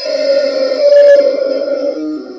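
Giant rubber chicken toy being squeezed, letting out one long, loud squawk that keeps going as the air is pressed out through its noisemaker, loudest about a second in.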